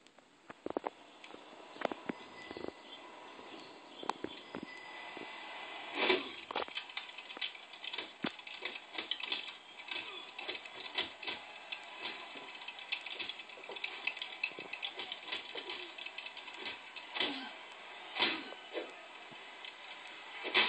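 Boxing video game sounds heard through a TV speaker: a long run of punches landing, many sharp hits, with a man groaning, starting about a second in.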